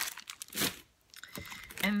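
Plastic packaging of nitrile garden gloves crinkling as it is handled and set down, in a few short rustles during the first half-second or so, then a brief lull.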